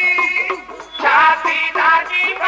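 Dhadi-style Punjabi devotional music: a bowed sarangi playing a wavering melody with sung voices. The sound dips about half a second in and comes back strongly about a second in.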